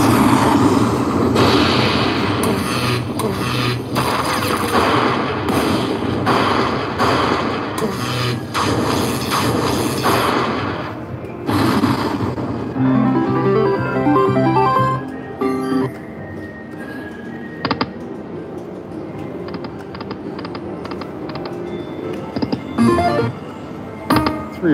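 Slot machine's win celebration music after a free-spins bonus: loud and dense for about the first eleven seconds, then a short tune of stepped notes, settling into quieter game music.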